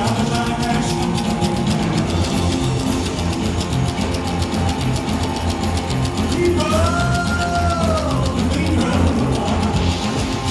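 Live rockabilly band playing: slapped upright bass, electric guitars and drums in a steady beat, with a lead vocal and a long curving held note about seven seconds in.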